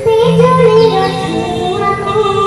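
A young girl singing an Odia Jagannath bhajan into a microphone, amplified over a PA, her voice wavering and gliding between notes over steady held keyboard chords.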